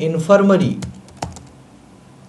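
Typing on a computer keyboard: a short run of a few sharp key clicks about a second in, entering a word.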